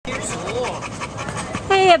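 An American Bulldog and Pit Bull mix panting steadily with its tongue out. Speech starts near the end.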